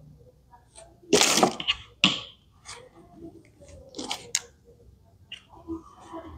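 Small hard-plastic toy parts clicking and scraping as a pole is forced into its base, with a few louder rasping bursts, the loudest about a second in and others near two and four seconds.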